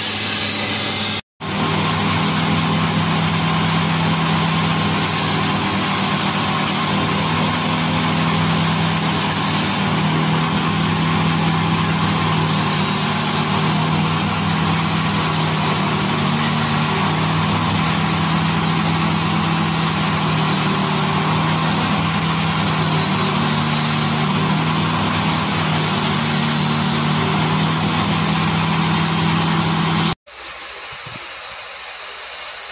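A belt-driven abrasive wheel running with a steady motor hum while a stainless steel knife blade is ground against it, giving a continuous grinding hiss. The sound breaks off for a moment about a second in, then carries on unchanged.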